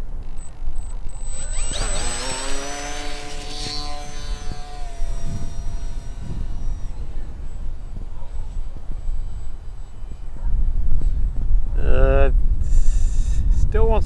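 Electric RC plane's brushless outrunner motor and 8x6 propeller spooling up with a rising whine about two seconds in, holding a steady whine at takeoff throttle, then dropping slightly and fading as the plane climbs away. From about ten seconds in a loud low rumble takes over.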